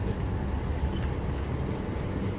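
Steady low rumble of a loaded shopping trolley's wheels rolling over pavement, with street traffic behind it.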